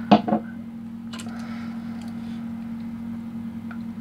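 A small handheld flashlight being handled and switched: a knock just after the start, then a sharp click about a second in and a few faint ticks, over a steady low hum.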